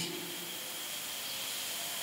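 Steady background hiss, mostly high-pitched, with a faint thin high tone running through it: the noise floor of the amplified hall's audio in a gap between words.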